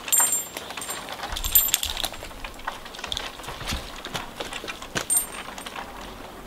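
Metal climbing hardware on a tree climber's harness and pole spurs clinking and rattling, with irregular sharp clicks and knocks as he shifts his footing on a small stem.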